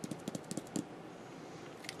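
A few faint, short clicks in the first second, then quiet room tone.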